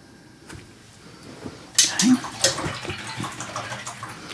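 Acrylic paintbrush being rinsed in a cup of water, swishing with a couple of sharp taps against the cup. It starts about two seconds in.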